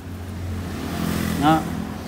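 A road vehicle passing by, its engine and road noise swelling to a peak about a second and a half in, then easing off slightly.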